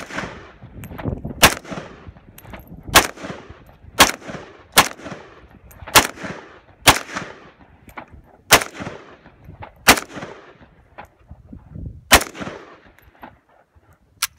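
AK-pattern rifle fired semi-automatically, about ten single shots at an uneven pace of one every one to two seconds, each crack trailed by a short echo.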